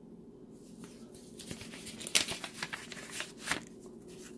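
Paper rustling and crinkling as a folded letter and stickers are pulled out of an opened paper envelope, in a run of short, sharp scrapes.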